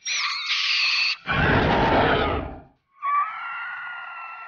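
Edited horror sound effects in three parts: a high ringing tone for about a second, then a noisy rush, then a held scream-like wail.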